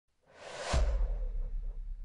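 Logo-intro sound effect: a whoosh that swells over about half a second and ends in a deep boom. The boom's low rumble then slowly fades away.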